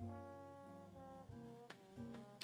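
Very faint background music with sustained brass-like chords, and a single faint click near the end.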